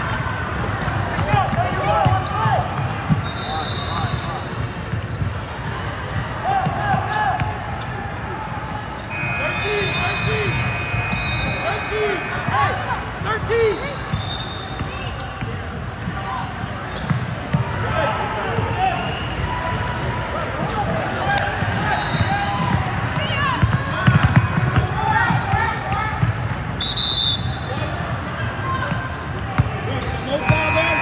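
Basketball game in a large indoor hall: a ball bouncing on the hardwood court amid scattered knocks, with players and spectators calling out. Short high-pitched squeaks come through now and then, one longer one about nine seconds in.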